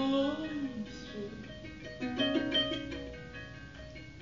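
A woman singing over her own harp accompaniment: a sung note swoops up and falls away in the first second, then plucked harp notes ring out under more singing about two seconds in.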